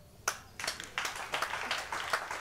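An audience claps lightly and unevenly: a single clap, then scattered clapping that thickens from about half a second in.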